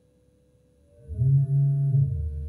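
ARP 2600 synthesizer tones: a faint sustained tone, then about a second in a loud low tone swells in, with pure higher tones gliding apart, one rising and one falling.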